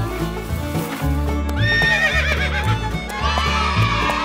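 A horse whinny sound effect, a high, quavering call about one and a half seconds in that falls away over a second or so, over background music with a steady bass beat.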